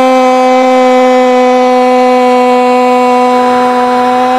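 A football commentator's long drawn-out goal cry, the vowel of "gol" held loud on one steady high note without a break.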